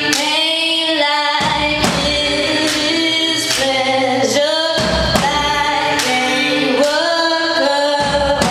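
A woman singing long held, gliding notes live over band music, with sharp percussive hits about once a second, recorded from the audience.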